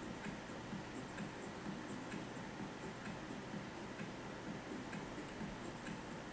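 Faint, regular ticking over low room hiss.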